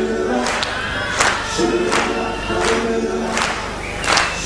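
A live band playing, with backing singers holding wordless notes over sustained chords and a drum hit about every 0.7 s.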